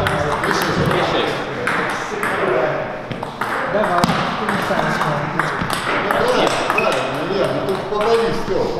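Table tennis rally: the plastic ball clicks sharply off rubber paddles and the table again and again, over a steady background of men's voices talking in the hall.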